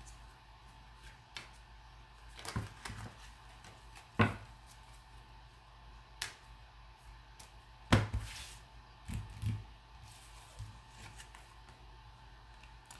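Tarot cards being handled and shuffled: scattered light clicks and taps, about seven of them at irregular intervals, the loudest about four and eight seconds in.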